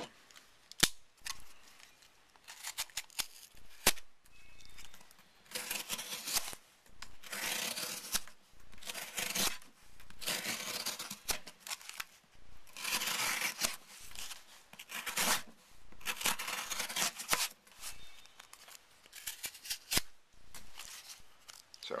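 A folding knife's blade slicing through corrugated cardboard in about ten separate strokes of roughly a second each, starting about five seconds in, with a couple of sharp clicks before the cutting begins. The knife cuts easily, the blade not yet resharpened since new.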